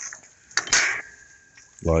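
A short metallic clatter, followed by a thin ringing tone that lasts almost a second before fading.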